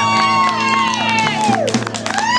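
A rock band's last chord ringing out under a long whooping cheer from the audience, a call that rises, holds and falls away. Scattered clapping starts in the second half.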